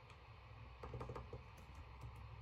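Faint typing on a computer keyboard: a few scattered keystrokes, bunched about a second in.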